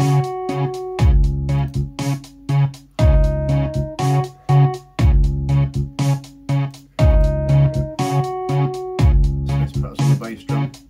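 Playback of a programmed electronic drum-and-keys loop: sustained synth and electric piano notes over kick drums and fast hi-hat ticks, with a heavy low bass-drum hit about every two seconds, the pattern repeating.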